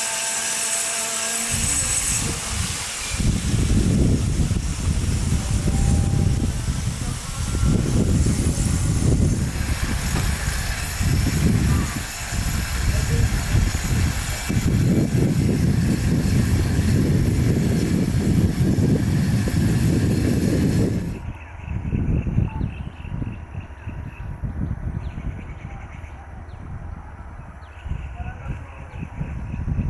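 Wind buffeting the camera microphone: an irregular low rumble in gusts, with short lulls. About two-thirds of the way through it drops abruptly to a weaker rumble.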